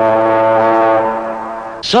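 A single long, low brass note with a rich, buzzy tone, held steady for about two seconds and fading slightly toward the end.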